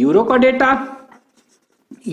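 A man speaking for about the first second. After that come faint strokes of a marker on a whiteboard.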